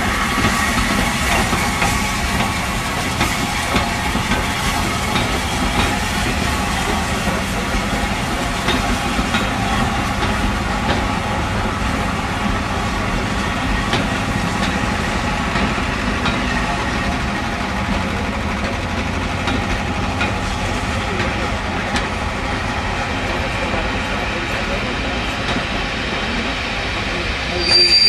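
A steam-hauled passenger train, LMS Black Five 4-6-0 No. 45231 with its coaches, rolling slowly past: a steady rumble of wheels on rail with some clickety-clack. A brief high wheel squeal comes right at the end.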